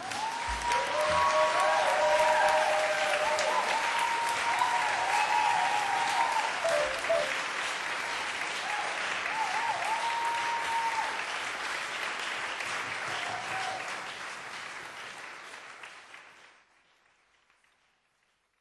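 Audience applauding and cheering at the end of a live song, the clapping fading out about sixteen seconds in.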